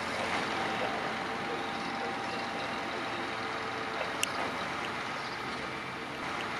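Steady hum and hiss from the stationary Beh 2/4 n°72 electric rack railcar. A faint whine sits over it for the first few seconds, and a single sharp click sounds about four seconds in.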